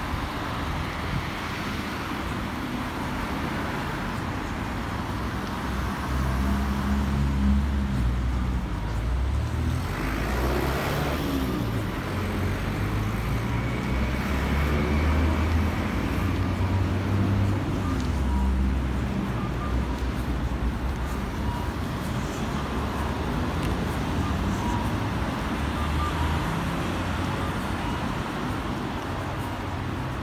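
Road traffic: a steady rumble of cars going by, with one vehicle passing louder about ten seconds in.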